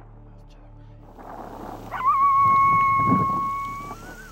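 Coyotes answering in a group chorus of yips and howls that builds from about a second in, with one long, steady howl held from about halfway through to near the end.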